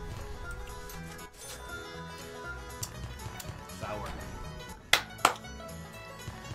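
Online slot game's background music running under the reel spins, with two sharp knocks close together near the end.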